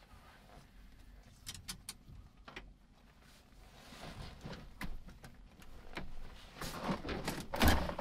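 Scattered small clicks, knocks and rustling from handling in a light aircraft's cockpit, with a heavier thump near the end; the engine is not yet running.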